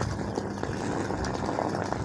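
A steady low rumble of outdoor background noise, with a faint low hum that fades out about half a second in.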